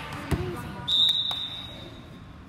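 Volleyball referee's whistle: one high, steady blast about a second in, lasting about a second, signalling the serve. Just before it a ball thuds once on the gym floor.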